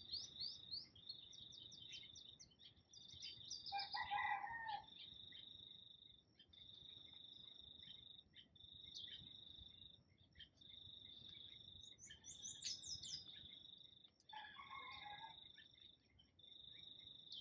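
Faint garden ambience: an insect trilling at one high pitch in repeated bouts of about a second, with short bird chirps over it. Twice, about four seconds in and near the end, there is a distant rooster crowing.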